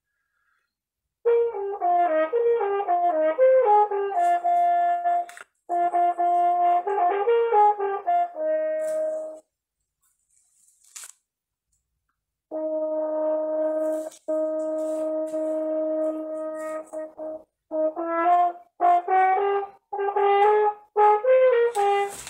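French horn playing, heard over a video call: a phrase of moving notes, a pause, then long held notes, and short detached notes near the end.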